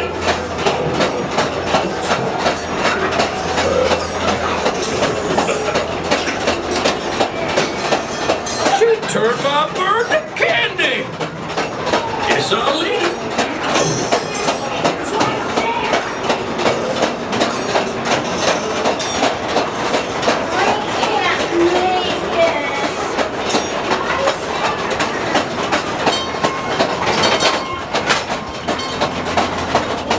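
Calico Mine Ride's ore-car train rolling along its track, the wheels clattering in a steady, even rhythm under indistinct riders' voices.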